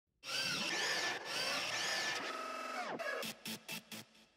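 Electronic logo sting: a dense, machine-like sweep with looping, wavering tones, gliding down about three seconds in and breaking into four short stuttered hits.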